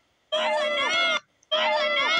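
The same short, pitched vocal clip of about a second, played twice in a loop: once about a third of a second in and again about a second and a half in, with silent gaps between.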